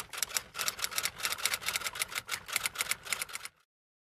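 Rapid clicking sound effect of an animated end screen, about eight sharp clicks a second; it stops about three and a half seconds in.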